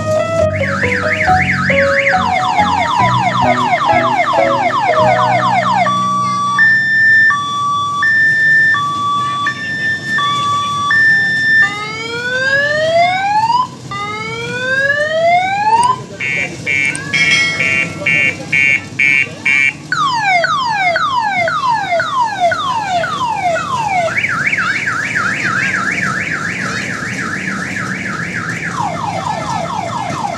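Electronic multi-tone siren of the car-alarm kind, cycling through its tones: fast repeating falling sweeps, then a slow high-low two-tone, then several slow rising whoops, a rapid warble, and falling and fast sweeps again, with a low steady hum underneath.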